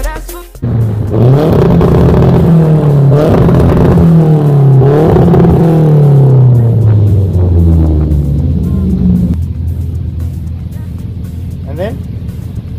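Carburetted Nissan A15 four-cylinder engine revved hard and held against a soft-cut rev limiter. The revs repeatedly hit a flat ceiling and dip as the limiter cuts, showing that the limiter works. The revs then fall back to a steady idle a few seconds before the end.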